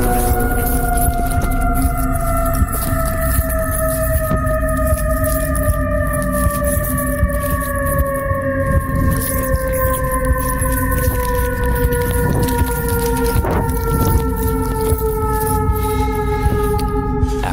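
A long pitched tone with overtones that sinks slowly and evenly in pitch, laid over the thuds and rustle of someone running through woodland undergrowth with a handheld camera.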